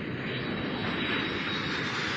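Steady rushing, engine-like noise from the intro sound effect of a YouTube video being played back on the computer.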